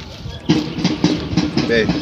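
Background noise of a rehearsal, music-like, with a low pulse repeating about four times a second, starting about half a second in.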